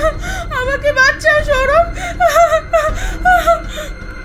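A woman's voice crying out in a rapid series of short, high, wavering wails and whimpers, each breaking off after well under half a second, stopping just before the end.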